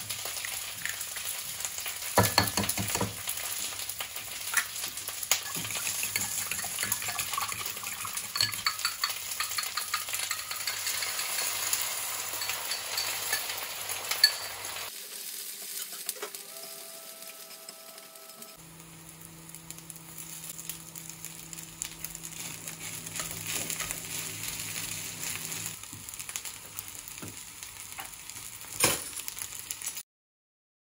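Egg, greens and rice sizzling and crackling in oil in a frying pan, with taps and scrapes of a wooden spatula stirring. The sizzle drops away briefly around the middle, and in the second half it is quieter, over a steady low hum.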